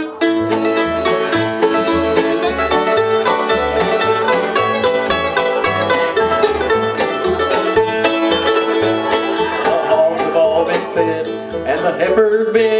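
Bluegrass band playing an instrumental intro: banjo, fiddle, acoustic guitar and mandolin over an upright bass. The bass steps between two notes about twice a second.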